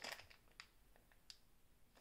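Near silence: room tone, with a few faint, brief clicks.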